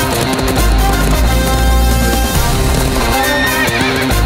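Loud action film score with a heavy bass line, with a horse neighing a little after three seconds in.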